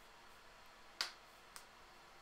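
A sharp click about a second in, followed by a fainter click about half a second later, over quiet room tone.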